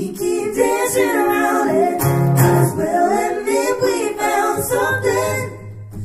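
Live acoustic folk band: several voices singing together in harmony, the acoustic guitars held back so the voices carry the sound. There is a short lull about five and a half seconds in, before the singing comes back.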